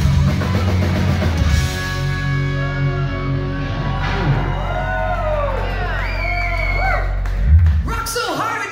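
Live rock band with electric guitars ending a song. The full band with drums plays for about the first second and a half, then drops to a held, ringing chord with guitar notes bending up and down, and there is a final low hit just before the end.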